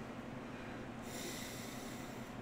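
A soft breath out through the nose, a faint hiss starting about a second in, over a steady low room hum.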